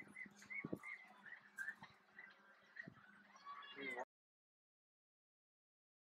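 Canada geese calling on the water, a series of short calls with the odd splash. It cuts off suddenly about four seconds in, leaving silence.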